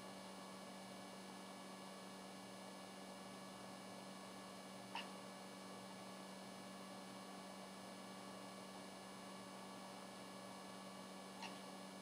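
Near silence with a faint steady electrical hum, broken by a soft click about five seconds in and another fainter one near the end.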